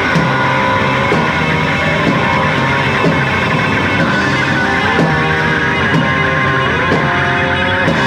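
Live rock band playing: electric guitars with notes that slide up and down in pitch, over bass and drums keeping a beat about once a second.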